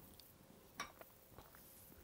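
Near silence, with two faint clicks a little after a second in: a small wire whisk touching the rim of a glass mixing bowl.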